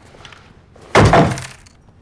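A loud crash about a second in, dying away over about half a second: objects knocked hard on a table cluttered with glass bottles and drink cans.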